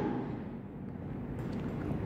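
Steady low rumble of background noise, with faint scratching of a pen writing a letter on workbook paper.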